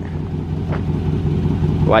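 Dodge Charger Scat Pack's 6.4-litre HEMI V8 idling steadily with a low, even hum.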